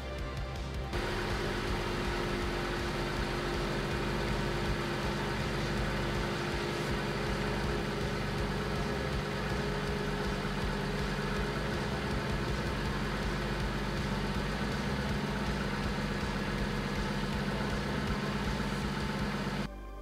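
2018 Infiniti Q50's engine idling steadily from about a second in, with background music over it.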